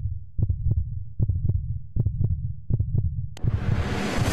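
Heartbeat sound effect: paired low thumps, lub-dub, repeating a little under once a second over a low rumbling drone. Near the end a sudden rush of music cuts in over it.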